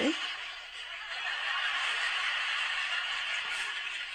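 Sitcom studio audience laughing: a steady wash of crowd laughter.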